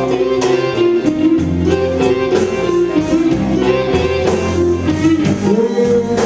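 A live blues band playing a slow blues, with an electric guitar carrying the melody over bass and drums.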